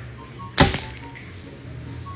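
A single short, sharp sound about half a second in, with a brief tail, over a faint steady low hum.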